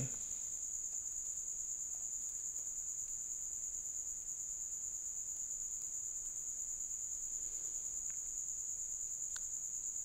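A steady high-pitched electrical whine in the recording, holding one pitch throughout, with a few faint keyboard clicks.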